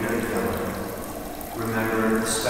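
A man's voice at a lectern microphone, echoing in a large church, the words unclear, with a short pause about a second and a half in.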